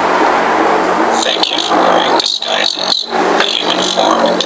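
A rushing noise for about the first second, then voices that come and go in short phrases, all over a constant low hum.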